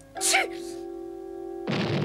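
A cartoon sneeze ("tschü") from a Smurf just after the start, over steady background music. About 1.7 s in comes a sudden loud cartoon explosion sound effect that dies away slowly.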